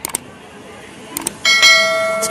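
Subscribe-button animation sound effect: a couple of mouse clicks, then a notification bell ding about a second and a half in that rings on.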